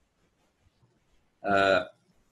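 A man's voice: after more than a second of near silence, one short held vowel sound with a steady pitch, lasting about half a second near the end.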